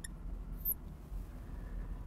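Faint marker writing on a glass lightboard, with one brief high squeak about half a second in, over a low steady room hum.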